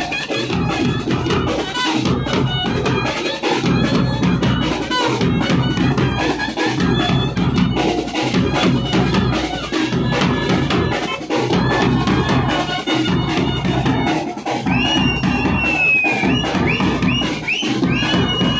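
Village brass band playing: clarinet and trumpets over large bass drums and a side drum beaten in a steady, driving rhythm. Near the end a high melody line bends and slides above the drums.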